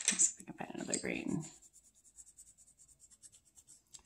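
Colored pencils clicking and scratching as a pencil is handled and drawn across paper during the first second and a half, then only faint light ticks.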